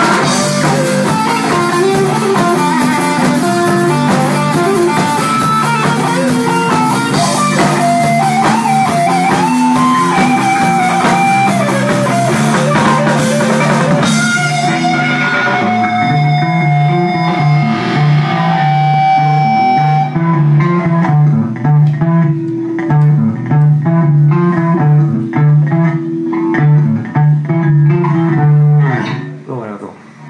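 Live rock band, with electric guitar, electric bass and drums, playing loudly. About halfway through, the cymbals drop out and the sound thins to held guitar notes, then a stop-start riff of short, clipped notes that ends just before the close.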